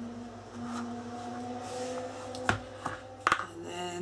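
Card pages of a handmade paper album being handled and unfolded by hand: soft rustling with two sharp taps, one about two and a half seconds in and one near three and a quarter seconds.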